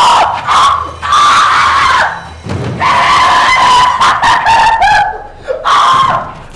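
A young man screaming in several long, loud, high yells with short breaks between them.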